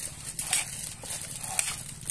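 Small kitchen knife slicing a green bell pepper on a ceramic plate: short crisp cuts roughly twice a second, with a sharp click about one and a half seconds in.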